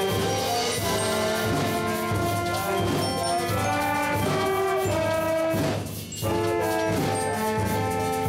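Amateur wind band of saxophones, trumpets and trombones playing a slow tune in long held notes, with a short break in the sound about six seconds in.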